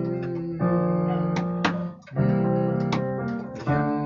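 Nylon-string classical guitar and keyboard improvising together: chords strummed and held, moving to a new chord three times, with a brief dip about two seconds in.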